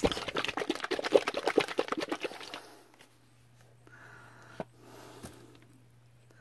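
A plastic squeeze bottle of acrylic paint being handled, giving a rapid run of clicking, sloshing rattles that die out about two and a half seconds in. Then it is quiet apart from a faint hum and two light taps.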